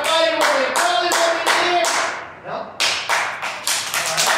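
A group of children clapping in a steady rhythm, about three claps a second, with voices chanting along. The clapping breaks off about two seconds in and starts again, quicker.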